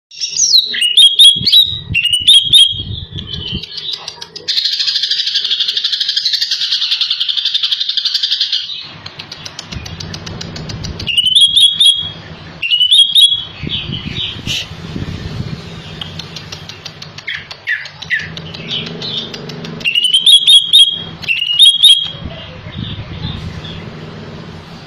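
Caged male leafbird (cucak ijo) singing loudly in bursts of short, sharp, high phrases that come back again and again, a song rich in mimicked phrases. A long steady buzz runs between about four and nine seconds in, and a low hum sits underneath from about nine seconds on.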